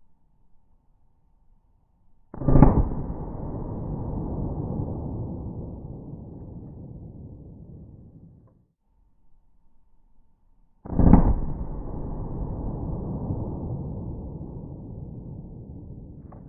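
Two pistol shots slowed down to a deep, drawn-out boom, each fading away over about six seconds: the first, about two seconds in, is a 9mm +P round, and the second, about eleven seconds in, is a .45 ACP +P round, both replayed in slow motion.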